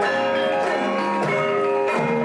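Javanese gamelan playing: bronze metallophones and gongs ringing out a steady melody of sustained, overlapping notes that change a couple of times a second.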